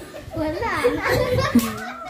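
Several voices, children among them, chattering over one another in unclear, excited talk.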